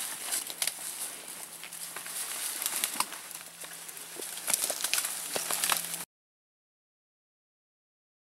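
Dry leaf litter rustling and twigs crackling as a deer carcass is dragged across the forest floor, with scattered footsteps, until the sound cuts off suddenly about six seconds in.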